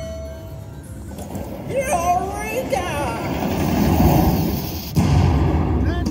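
Eureka Treasure Train slot machine playing its bonus-trigger sound effects. Rising whistle-like tones come about two seconds in, then a rumbling swell, and a sudden boom about five seconds in.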